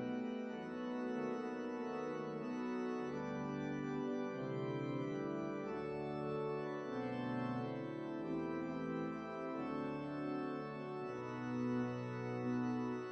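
Organ playing a service prelude: slow, held chords over a bass line that changes every second or two.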